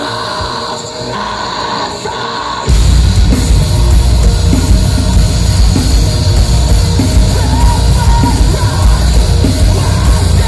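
Live metalcore band with vocals over a quieter, thinner passage; about three seconds in, the full band comes in loud with a heavy low end and keeps going.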